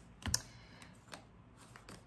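A deck of tarot cards being shuffled and handled: one sharp card snap near the start, then a few faint card clicks.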